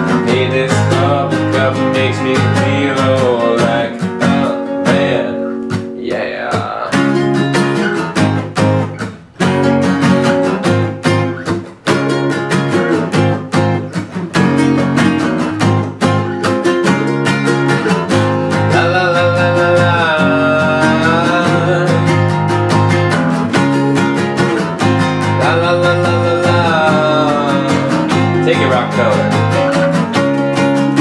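Acoustic guitar playing a continuous instrumental passage of strummed chords and picked notes, with two brief breaks about nine and twelve seconds in.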